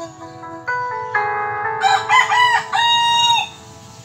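A rooster crowing once, about two seconds in: a few short choppy notes, then one long held note that falls away at the end. Quiet backing music with held chords runs beneath it.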